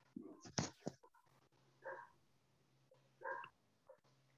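Two short, faint dog barks about a second and a half apart, from a dog in the background of a video-call participant, after the tail of a laugh.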